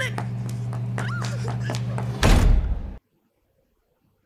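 TV episode soundtrack: a low steady drone under a line of dialogue, then a loud heavy slam about two seconds in. The sound cuts off abruptly to silence about a second later.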